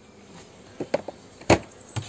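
A beehive's lid and woodwork being handled: a few light clicks, then one sharp knock about one and a half seconds in, over a faint buzz of bees.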